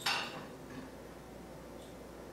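A small glass jar with a hinged lid clinks once at the very start as it is handled, followed by faint handling sounds.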